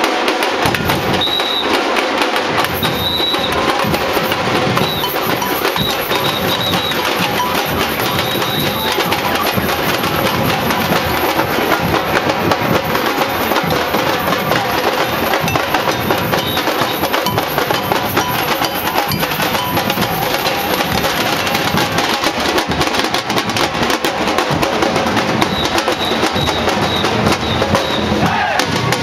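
Street percussion band drumming a steady carnival rhythm, the drums and higher percussion going without a break. Short high notes sound several times in the first seconds and again near the end.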